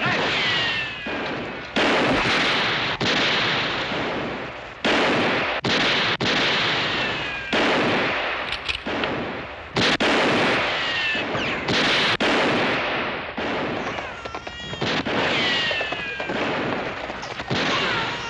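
Gunfire in a shootout: about eight revolver shots at irregular intervals, each with an echoing tail, several followed by a falling ricochet whine.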